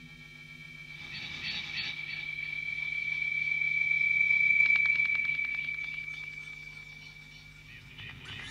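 Horror-film soundtrack drone with a steady high whine over a low hum, swelling to its loudest about halfway through and then fading, with a quick run of crackling clicks at the peak.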